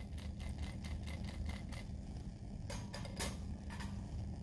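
Faint, rapid ticking, about five or six taps a second, from a finger flicking a glass test tube by hand to mix zinc powder into the broth, over a low steady room hum.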